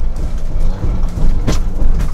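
Ford Bronco driving over dirt whoops: a steady low rumble and rattle of the truck and its suspension taking the bumps, with one sharp knock about one and a half seconds in.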